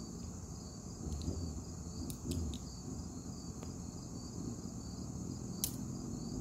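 Steady, high-pitched chorus of crickets, with a few faint clicks. No shot is fired.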